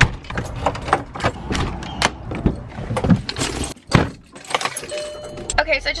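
Keys jangling and a front-door deadbolt being locked, a run of sharp metallic clicks and rattles. Near the end a steady low car-engine hum starts, heard from inside the cabin.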